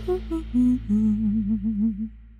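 Closing theme music of a TV talk show: a melody of short notes, then from about a second in a wavering held note, over a steady low drone.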